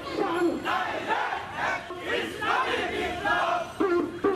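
A crowd of marching men shouting protest slogans together, many voices at once.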